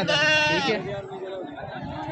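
A goat bleating: one loud, steady bleat lasting under a second at the start, followed by fainter calls.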